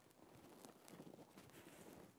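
Near silence: faint rustling and a few small clicks of hands handling stripped electrical wires.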